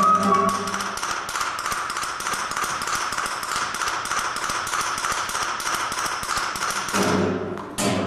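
Rapid, even light tapping, about five taps a second, played as part of a contemporary chamber piece. Near the end it gives way to a low pitched note and a sharp knock.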